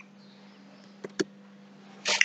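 Faint steady low hum and hiss of background noise, with two short clicks a little after a second in.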